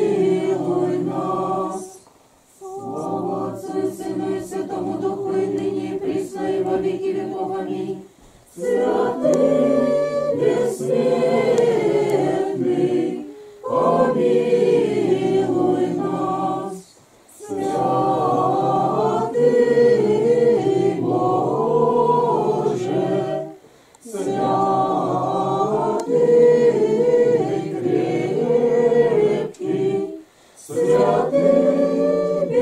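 Small congregation singing an Orthodox liturgical chant unaccompanied, in sustained phrases broken by short pauses for breath every few seconds.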